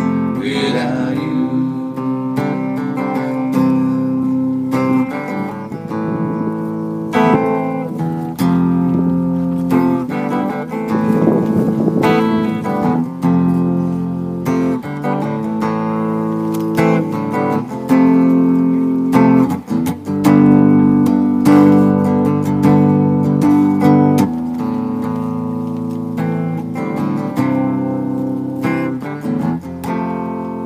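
Hollow-body electric guitar playing an instrumental passage of strummed and picked chords, the chords changing every second or two.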